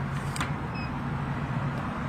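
Steady low hum and rumble of road traffic, with a couple of faint clicks in the first half second as a card is swiped through the vending machine's card reader.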